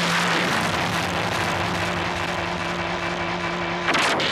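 A steady hissing rush with a low held tone beneath it, ending abruptly about four seconds in.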